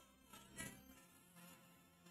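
Near silence: a short gap in a choir's singing, with only faint room tone.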